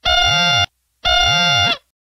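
Two identical short electronic tones, each about two-thirds of a second long with a brief gap between, the lower notes within each swooping up and back down in pitch.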